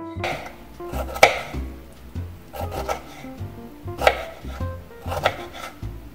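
Kitchen knife chopping pickle on a wooden cutting board: a handful of uneven cuts, the sharpest about a second in.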